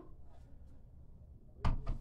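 A dumbbell set down on the floor: one sharp knock about one and a half seconds in, after a stretch of low background.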